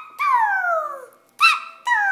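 A baby's high-pitched vocal squeals: a long one about a quarter second in that falls steadily in pitch, then a short one past the middle and another starting near the end.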